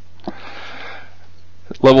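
A man's audible breath in, a soft noisy inhale lasting about a second, taken in a pause between sentences; he starts speaking again near the end.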